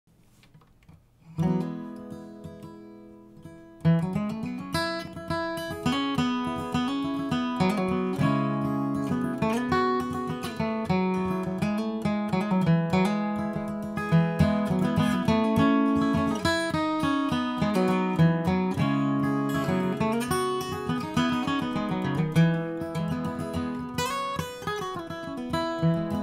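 Capoed acoustic guitar: a single chord is struck and rings out fading, then steady rhythmic strumming and picking begins about four seconds in, the instrumental intro of a bluegrass song.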